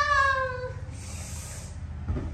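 A long, high-pitched cry, falling slightly in pitch and fading out under a second in, followed by a short soft hiss.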